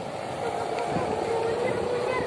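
A kite hummer drones steadily in the wind as one sustained tone that wavers slightly in pitch, with voices in the background.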